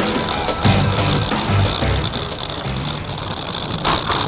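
Background music with a steady, heavy beat laid over the riding footage.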